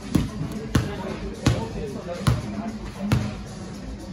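A basketball dribbled on an indoor court floor: five bounces, a little under a second apart, slowing slightly.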